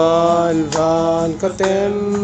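A group of people singing a slow song together, holding long drawn-out notes with short breaks between phrases.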